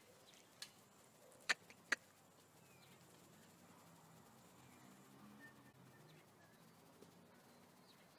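Near-silent outdoor quiet with faint bird chirps, broken by three sharp clicks in the first two seconds, the two loudest about half a second apart.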